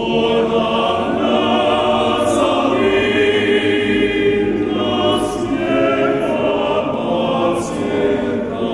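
Men's choir singing a cappella in several-part harmony; the full choir comes in louder right at the start.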